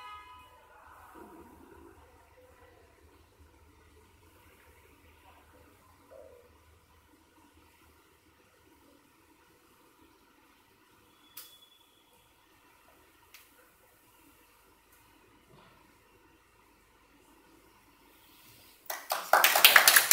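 Quiet room tone with a couple of faint clicks, then about a second before the end a small group of people clapping their hands, loudly.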